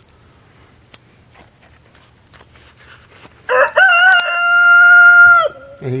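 A rooster crowing once: one long call of about two seconds, starting about three and a half seconds in, rising at the start and then held level, loud.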